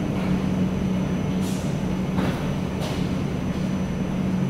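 Steady low mechanical drone with a constant hum and a rumbling undertone, and a few faint knocks over it, heard through the terminal glass.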